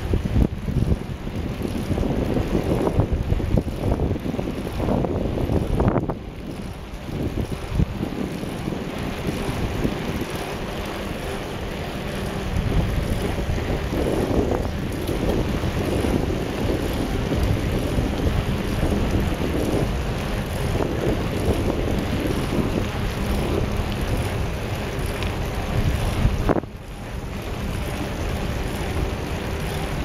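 Wind buffeting the microphone of a camera riding on a moving bicycle: a steady, low, noisy rush that drops away briefly twice, about six seconds in and again near the end.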